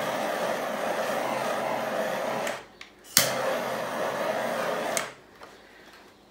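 Handheld butane torch flame hissing steadily as it is passed over wet acrylic pour paint. It cuts off about two and a half seconds in, is relit with a sharp click a moment later, and runs for about two more seconds before it stops.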